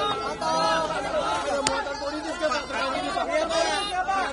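Many voices talking over one another at close range in a crowd of reporters, with one sharp click about one and a half seconds in.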